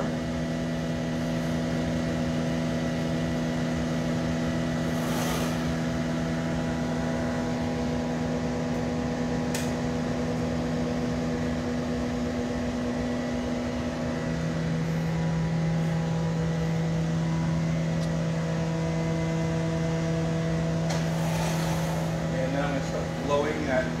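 Steady droning hum of glassblowing studio equipment, such as furnace and glory hole burner blowers and fans, with several steady tones. About halfway through, the hum shifts to a lower tone.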